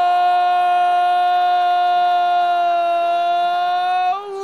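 A TV football commentator's long, held "Goooool" cry: one loud, steady shouted note celebrating a goal, sagging slightly in pitch near the end.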